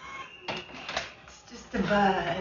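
Speech: conversational voices in a small room, with a voice starting up loudly near the end.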